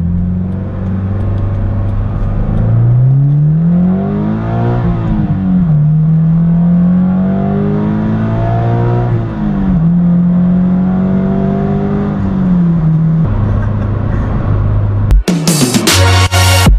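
Subaru BRZ's flat-four engine through an Invidia N1 stainless cat-back exhaust, heard from inside the cabin while driving: the engine pitch rises and falls twice under acceleration, holds steady, then drops away. Electronic music comes in just before the end.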